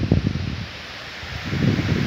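Wind buffeting a phone's microphone in gusts as a low rumble. It eases for about a second in the middle, over a faint steady hiss.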